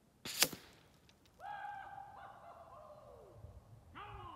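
A single sharp crack from a .357 shot fired from an FX Impact M3 PCP air rifle, heard at the target end. It is followed by a long, high pitched call whose pitch falls near its end, and a second such call begins near the end.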